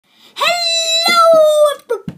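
A child's voice holding one loud, long high note that starts about a third of a second in, sags slightly in pitch, and lasts about a second and a half.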